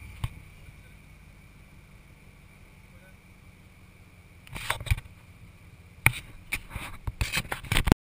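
Ford Bronco's 351 Windsor V8 running low and steady as the truck crawls up a rocky trail. Rocks crack and knock under the 37-inch tyres, with sharp clusters starting about four and a half seconds in and coming thicker near the end.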